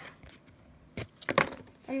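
Things being handled and set down on a wooden tabletop while card packs are opened: a sharp click about a second in, then a few quick knocks.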